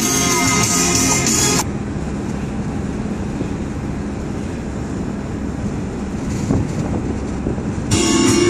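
Background music that cuts off suddenly about a second and a half in. It gives way to the steady road and engine noise of a moving vehicle, heard from inside the cabin.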